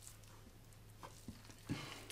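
Quiet handling on a wooden cutting board: a few light taps as a soft, boiled seitan loaf and a kitchen knife are moved about, over a faint steady low hum.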